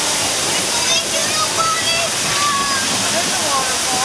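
Water falling from artificial rock waterfalls, a steady rush of water.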